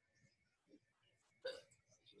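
Near silence, broken by one short, faint sound about one and a half seconds in.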